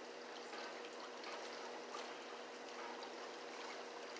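Quiet outdoor background: a faint even hiss with a steady low hum and a few faint ticks.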